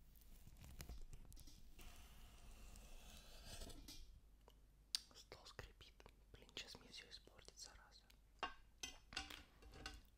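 Quiet close-miked handling sounds: a steel knife on a wooden cutting board at first, then, in the second half, rustling and crinkling of a plastic food package with many small sharp clicks.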